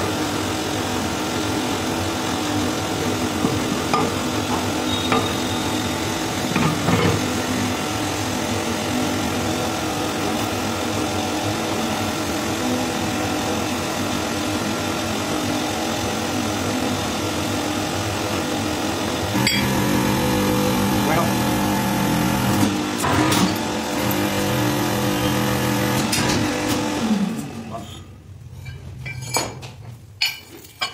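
The motor and pump of a hydraulic press run with a steady hum, and steel die rings knock and clink as they are stacked by hand. The hum stops near the end.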